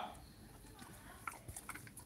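A dog chewing a treat: a few faint short clicks in the second half.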